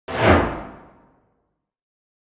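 Whoosh sound effect of an animated logo intro, coming in sharply just after the start, peaking almost at once and dying away over about a second as its high end falls off first.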